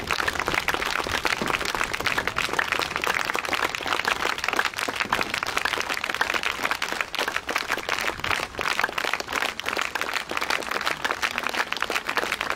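Audience applauding steadily: many hands clapping together.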